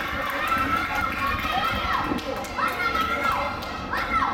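Children's voices shouting and calling out in long rising and falling cries over a steady crowd hubbub.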